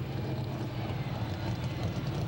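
Monster truck's supercharged 572-cubic-inch alcohol-burning Hemi engine running with a steady low sound as the truck slows at the end of its run.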